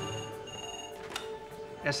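Hospital desk telephone ringing: two short electronic rings in the first second, over a low, sustained music score.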